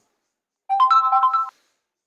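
Smartphone notification chime signalling an incoming app alert: three quick rising electronic notes that ring together as a short chord, lasting under a second and stopping abruptly.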